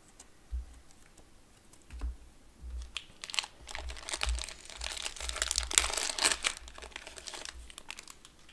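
A 2020 Contenders football fat pack's plastic-foil wrapper being crinkled and torn open by hand: a dense run of crackles and small clicks that starts about two seconds in and is busiest around the middle, over dull low bumps of handling.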